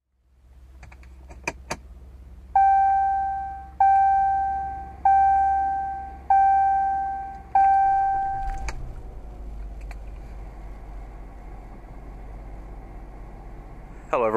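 Jeep Cherokee's interior warning chime: five single bell-like tones about a second and a quarter apart, each fading away, after two quick clicks. A click cuts the chiming off just past the middle, and a low steady rumble goes on underneath.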